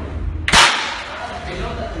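One loud, sharp crack about half a second in, a hard object slammed down against a tiled floor, ringing on in a large hard-walled room.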